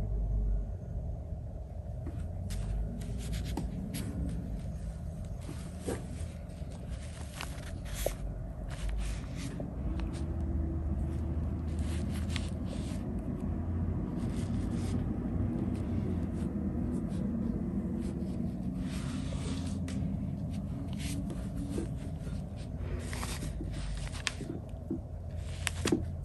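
A steady low rumble, with scattered light clicks and soft scrapes from a Chinese painting brush. The brush is tapped in ceramic paint and ink dishes and stroked across handmade Xuan paper.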